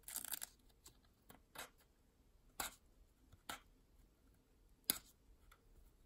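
Fingertips picking and scratching at the painter's tape wrapped around a stack of plastic-sleeved trading cards: a handful of faint, short scratches and clicks.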